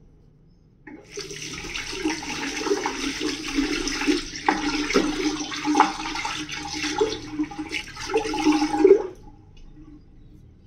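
Tap water running and splashing into a bathroom sink for about eight seconds, turning on about a second in and shutting off near the end.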